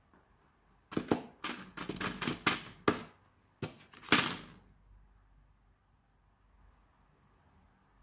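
Plastic blister packs on cardboard backing cards being shuffled and picked up off a table: a quick run of crackles and taps that starts about a second in and lasts about four seconds.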